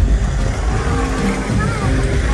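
Steady low rumble of an idling vehicle engine, with faint voices murmuring over it.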